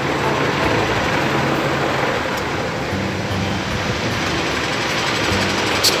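Busy street traffic with a city bus engine running close by, a steady low hum under the road noise. A sharp click near the end.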